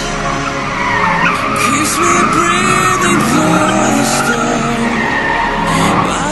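BMW E30 with a swapped-in M60B40 4.0-litre V8, drifting: the engine revs rise and fall repeatedly while the rear tyres squeal as they slide.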